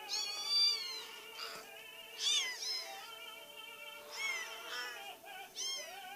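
Five-week-old kittens mewing, four high-pitched mews about one and a half seconds apart, over steady background music.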